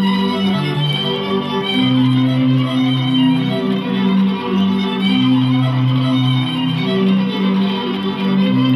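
Multitracked folk violin music: several layered violin parts, all recorded on one violin, with long held low notes changing every second or two under a higher melodic line.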